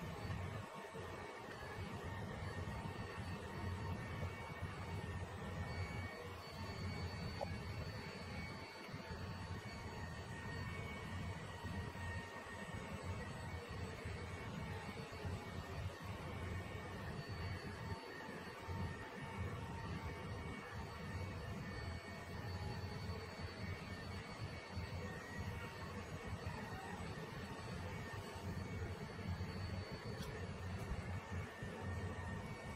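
iLife Shinebot W450 robot mop running as it mops a tile floor: a steady motor hum with a faint high whine that cuts in and out.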